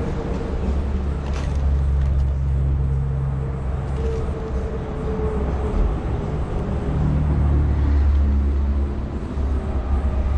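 Low, steady engine rumble with a hum that shifts in pitch now and then, like a motor vehicle running close by.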